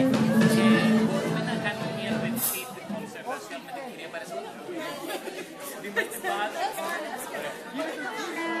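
Music with steady held notes that cuts off about two and a half seconds in, followed by many voices chattering in a large, echoing hall, with one sharp knock near six seconds.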